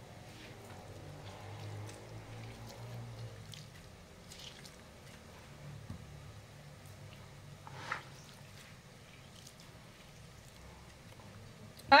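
Quiet hand-squeezing of a lime half, its juice dripping into a bowl of raw kibbeh dough. A few light knocks follow, the clearest about eight seconds in, over a faint low hum.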